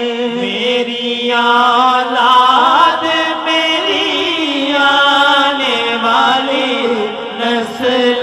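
Unaccompanied male voices singing a naat: a lead reciter draws out one long melismatic line with wavering ornaments, over a steady droning hum held by a backing group of men.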